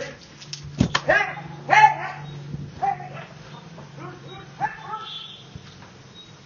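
Doberman barking, a series of short barks about one a second, the loudest near two seconds in and the later ones fading.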